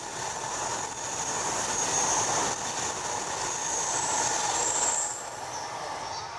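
Shinkansen high-speed train passing on the elevated line: a steady rushing noise with a high-pitched whine over it, easing off about five seconds in as the last car goes by.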